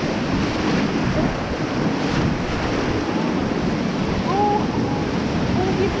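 Whitewater rapids of a flooded river rushing around an inflatable raft: a steady, dense rush of water, mixed with wind buffeting the action-camera microphone.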